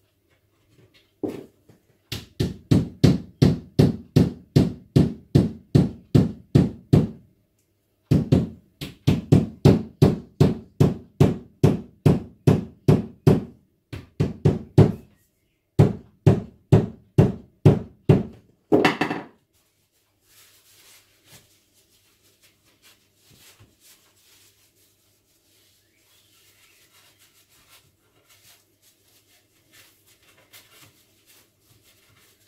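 Mallet knocking on wood in steady, even blows, about two and a half a second, in three runs with short pauses between. A single sharper, brighter knock ends them, followed by faint rustling.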